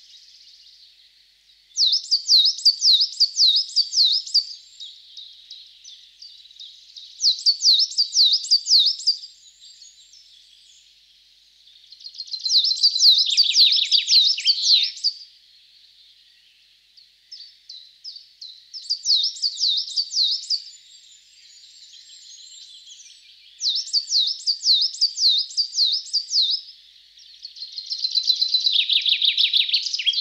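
A songbird singing, repeating a phrase of quick, falling high notes about every five seconds, six times over, against faint outdoor background noise.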